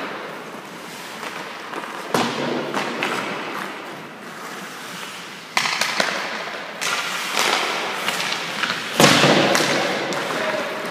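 Hockey pucks being shot and striking the goalie, net or boards, four sudden cracks that ring on through the indoor rink, with skate blades scraping the ice in between.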